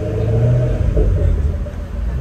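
Porsche 911 GT3 RS's naturally aspirated 4.0-litre flat-six at low speed, a deep rumble with the revs swelling and easing in the first second.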